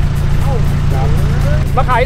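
A vehicle engine running steadily at idle, a constant low rumble, with faint voices of people talking.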